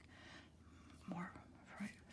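Soft whispered speech from a woman.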